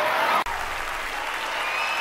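Audience applauding, with a sudden break about half a second in where the sound is cut, then steady applause again.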